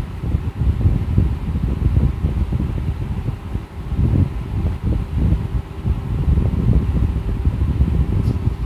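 Low, uneven background rumble with a faint steady hum.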